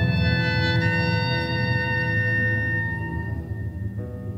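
Men's choir with piano holding a long chord at the end of a sung phrase, the sustained notes slowly fading away.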